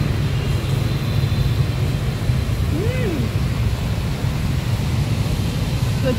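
Steady low rumble of street traffic. About halfway through comes one short rising-and-falling voice-like tone.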